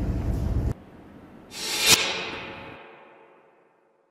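Hall room noise cuts off suddenly under a second in. A whoosh sound effect then swells to a sharp hit about two seconds in and fades away, a logo sting.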